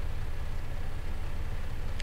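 Steady low hum with a faint hiss over it: background noise of the recording, with no speech.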